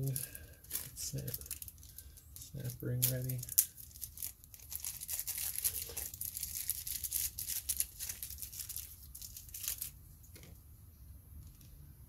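Clear plastic parts bag crinkling and rustling as hands rummage through it for small brake rebuild-kit parts, with a sharp click about three and a half seconds in.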